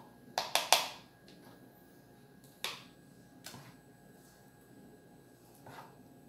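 Sharp plastic knocks and taps of a plastic ladle and plastic tubs while thick soap paste is spooned into the tubs: a quick cluster of three near the start, then single taps spread out over the rest.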